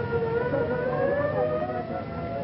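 A siren wailing, its pitch climbing slowly, over a steady background of noise.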